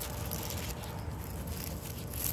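Quiet, steady outdoor background noise with no distinct event.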